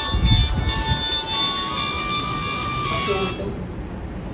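Mobile phone ringtone playing a tune of steady electronic tones, cutting off abruptly a little over three seconds in as the phone is silenced.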